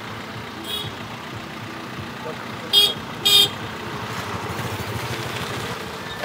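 A car horn giving two short toots about half a second apart, over the low steady sound of a vehicle engine running.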